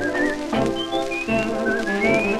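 1929 dance-band recording played from an unprocessed 78 rpm shellac disc: an instrumental passage of full band chords under a high melody line that slides between notes, with light surface clicks.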